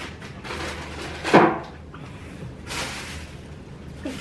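Objects being handled: a single knock about a second in, with a few faint rustles around it.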